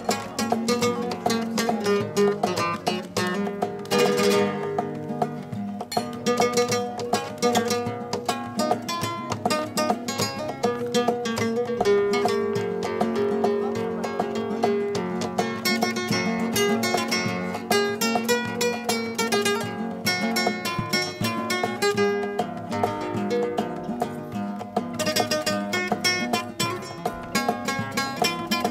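Two nylon-string flamenco guitars playing together in gypsy style, a fast picked melody over strummed chords.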